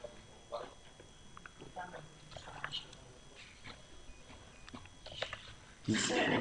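Quiet room tone with faint, scattered small clicks and rustles.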